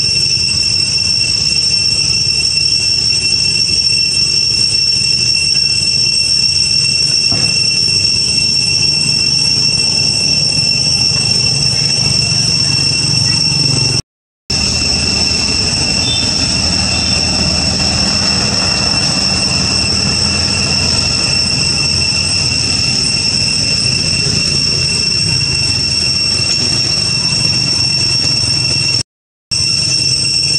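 Cicada chorus: a loud, steady, high-pitched drone at two pitches that never lets up. It cuts out to silence briefly twice, about halfway through and near the end.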